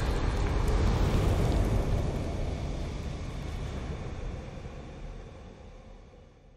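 Deep, noisy rumble of a cinematic intro sound effect, the tail of a whoosh-and-boom stinger, fading away steadily over several seconds.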